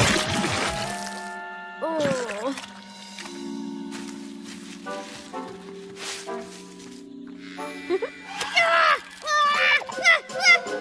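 Cartoon soundtrack: a crash right at the start that rings away over the first second, then soft background music with held notes. Short wordless vocal exclamations come about two seconds in and again near the end.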